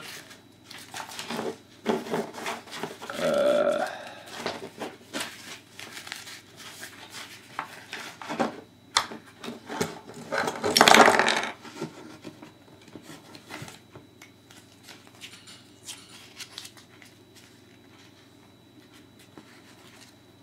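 Plastic pieces of a snap-together Transformers Construct-Bots Optimus Prime figure clicking and knocking as they are twisted and handled, mixed with the pages of a paper instruction booklet being turned; the loudest rustle comes about eleven seconds in.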